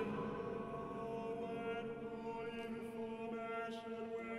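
Chamber vocal ensemble singing a steady, held chord of several notes at once, a chant-like drone.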